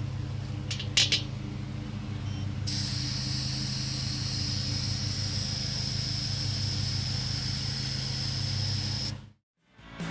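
Air hissing steadily from the Schrader air valve of a new well pressure tank while a digital pressure gauge is pressed onto it, starting about three seconds in and cutting off suddenly near the end. Brief clicks come about a second in, over a steady low hum.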